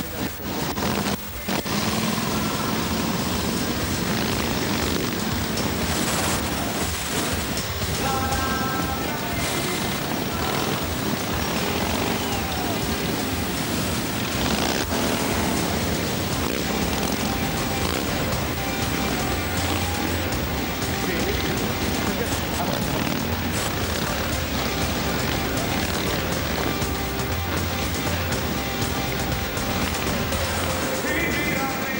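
Engines of a large pack of motorcycles running together as they ride slowly, a dense steady noise, with music and voices mixed in.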